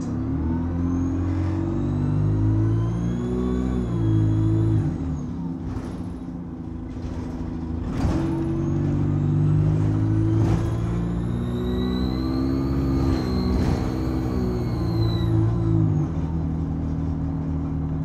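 Bus diesel engine pulling hard under acceleration, heard from inside the saloon, with a high turbocharger whistle, a turbo scream, that climbs steadily in pitch and then drops away as the power comes off. It happens twice: from about a second in to near five seconds, then a longer pull from about eight seconds to near sixteen seconds.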